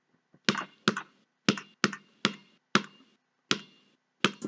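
Seven sharp impact sound effects, irregularly spaced about half a second apart, each with a brief ringing tail. They are the hits that accompany viewer comments popping onto the screen.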